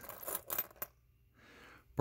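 Loose metal coins clinking against each other as a hand picks through a pile of coins on a wooden table: a few quick clinks in the first second, then quiet.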